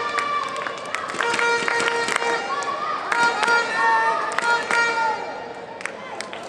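Badminton hall sounds: a busy run of sharp clicks and knocks mixed with short squeaking tones, over background voices, easing off near the end.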